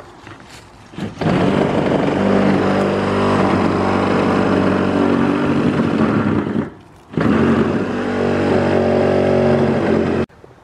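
A loud, steady engine-like motor drone starting suddenly about a second in, breaking off briefly around seven seconds, then running again until it stops abruptly at the end.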